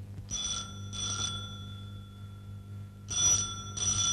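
Desk telephone ringing in pairs of short rings: two rings near the start, then two more about three seconds in, over a low steady hum.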